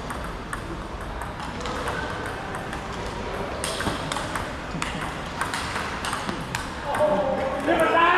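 Table tennis rally: the ball clicking off paddles and table in a quick, irregular series of hits.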